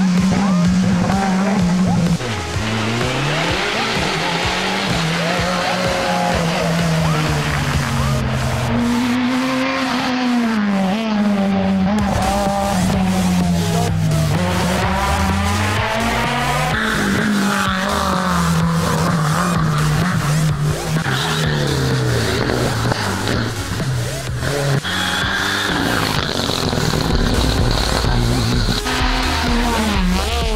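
Rally car engines revving up and down hard through a tight bend, mixed with background music with a steady beat.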